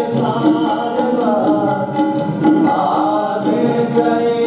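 Kirtan: voices singing a Sikh devotional hymn, with tabla strokes keeping an even beat and long held tones under the melody.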